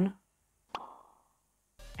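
A single sharp click about three-quarters of a second in, followed by a short fading pop.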